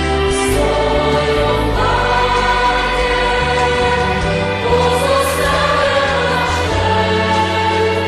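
Background music: a choir singing a religious song, with long held notes over a bass line that shifts every second or two.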